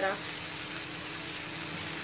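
Chopped onion, cumin and green chillies sizzling steadily in hot oil in a frying pan as a spatula stirs them.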